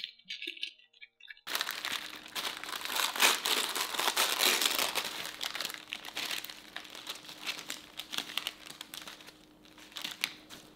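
Baking paper crinkling while a thin layer of set green chocolate cracks off it into shards, as the rolled-up paper is opened out. A dense run of crackles and snaps starts about a second and a half in, is loudest in the middle and thins out near the end.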